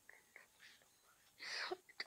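A child's short breathy whisper about one and a half seconds in, after a few faint clicks; otherwise quiet.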